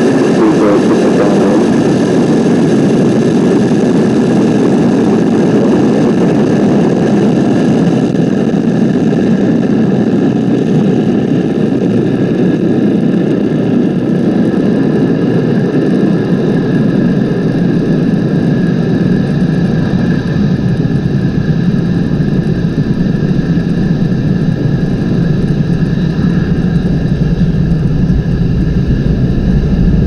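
Falcon 9 rocket's nine Merlin 1D engines during liftoff and ascent: a loud, steady rumble that grows deeper in the second half.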